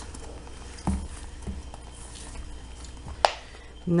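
Plastic margarine tub handled in rubber-gloved hands on a table: a dull knock about a second in and one sharp click a little after three seconds.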